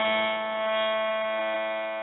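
A steady held musical drone of several sustained pitches, the background drone that accompanied the chant, continuing alone and fading slightly toward the end.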